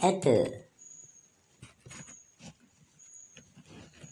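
A voice reading aloud in Sinhala ends about half a second in, followed by a pause holding only faint scattered clicks and a faint high tone that comes and goes.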